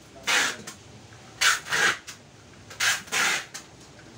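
Packing tape pulled off a handheld tape dispenser onto a cardboard box in short ripping strokes, about four pulls.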